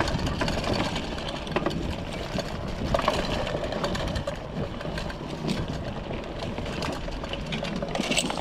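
Mountain bike rolling down a dirt trail over dry leaf litter: tyres crunching on leaves and soil, with the frame and drivetrain rattling and clicking over the bumps.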